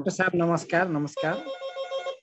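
A man speaking, then a steady electronic tone with many even overtones that starts a little over a second in and holds flat for about a second.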